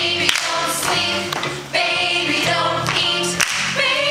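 Stage musical cast singing together over musical accompaniment, heard from the audience in a theatre.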